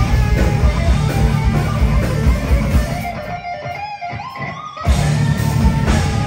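Live thrash metal band: distorted electric guitars over drums and bass. About three seconds in the low end drops out, leaving a single line that bends upward, and the full band crashes back in about five seconds in.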